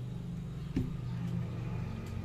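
A steady low engine-like hum, with one short click a little under a second in.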